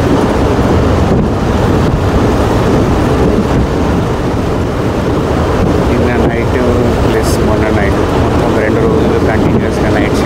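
Moving train heard from an open carriage window: a steady, loud rumble with wind buffeting the microphone.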